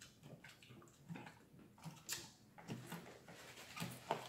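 Quiet eating sounds: plastic forks picking at salad in plastic takeout bowls, and chewing, heard as scattered short clicks and small noises, the sharpest about two seconds in.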